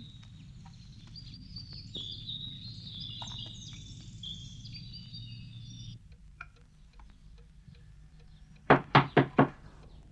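Birds chirping over a low steady rumble. About six seconds in it all goes quiet, and near the end come four quick, sharp knocks on a door.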